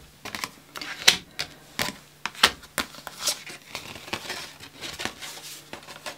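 Stiff oracle cards being handled and laid down on a wooden table: an irregular run of about a dozen sharp flicks, snaps and taps, with papery sliding between them.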